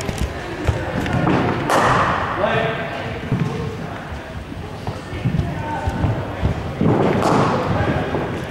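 Thuds of cricket balls in indoor practice nets, several sharp knocks over a background of voices echoing around a large sports hall, with two louder rushing bursts, about two seconds in and near the end.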